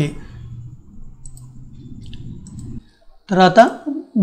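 A few faint computer mouse clicks over a low steady hum, then a short spoken word about three seconds in.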